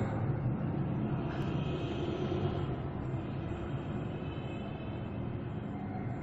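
Steady rumbling background noise with no clear tones or distinct events, fading slightly as it goes on.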